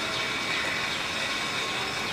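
Steady background noise: an even hiss with a faint hum and no distinct events. The hand-peeling of the tomato skins makes no sound that stands out above it.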